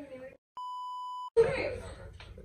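A censor bleep: one steady, flat, high beep about three-quarters of a second long, edited into the talk, with the sound cut to dead silence just before and just after it.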